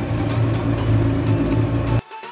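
Yamaha jet boat's engines running steadily under way, a constant low hum with wind and water noise over it; it cuts off abruptly at the end.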